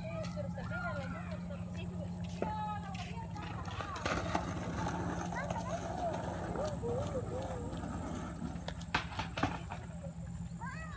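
A young child's high voice chattering in short bits, over a steady low hum, with a couple of sharp clicks near the end.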